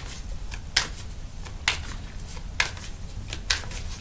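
A tarot deck being shuffled by hand: a sharp card snap about once a second, four in all, over a faint low hum.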